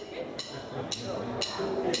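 A live rockabilly band starting up: sharp drum clicks keep time about twice a second while the instruments come in softly and grow louder, with voices in the room.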